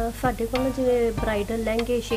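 A person's voice in short phrases of held, pitched tones over a low steady hum.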